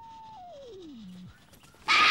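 A cartoon-style whistle sound effect: one pure tone that slides slowly down in pitch, then drops steeply, holds briefly low and cuts off a little over a second in. Just before the end, a sudden loud rush of noise breaks in.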